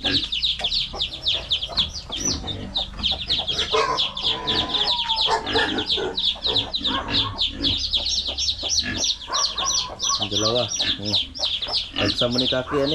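Newly hatched chicks peeping without pause: many short, high-pitched falling calls a second. A mother hen clucks at times underneath.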